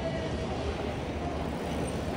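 Busy city street ambience: a steady low rumble with faint crowd voices mixed in.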